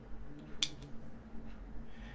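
A quiet pause with two small sharp clicks just over half a second in, over a faint steady low hum.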